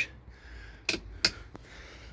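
Toggle switches on a Land Rover Series 3 dashboard clicked three times in quick succession, working the interior light, about a second in.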